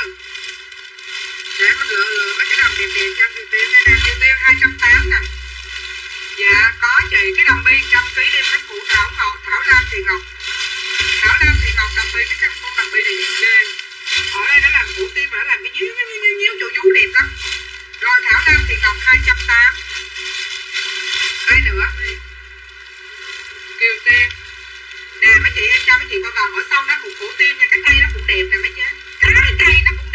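Voices mixed with background music with an irregular low beat, loud throughout.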